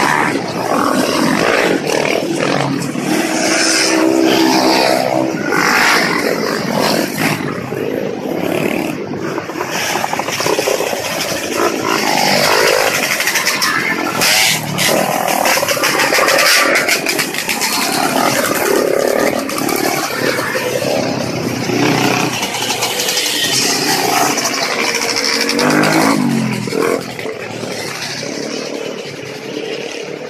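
Trail motorcycles riding past close by one after another, their engines revving up and down as each goes by. It gets quieter near the end.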